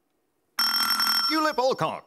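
A quiz contestant's electronic buzzer sounds suddenly about half a second in, a steady multi-pitched tone lasting under a second, signalling that a player has buzzed in to answer.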